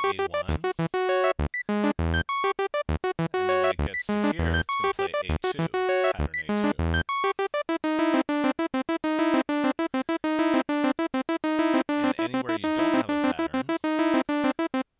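Thor synthesizer in Reason, sequenced by the Matrix step sequencer, playing a looping pattern of short staccato notes. About seven seconds in the pattern changes to a second one of evenly repeated notes at a steadier pitch, as the pattern-select automation switches from A1 to A2.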